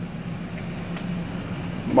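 Steady low mechanical hum with a single faint click about a second in.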